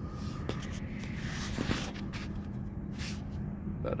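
Rustling and rubbing handling noise from the hand-held camera as it is moved close to the microphone, with a few light clicks, over a steady low electrical hum from the refrigeration equipment.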